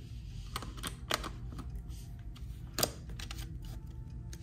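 Light, scattered plastic clicks and taps of a wireless flash trigger being slid onto a camera's hot shoe and handled, with one sharper click a little before the end.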